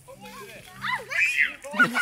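Young children's excited voices, squealing and shouting, with a high-pitched squeal in the middle and another burst of voice near the end.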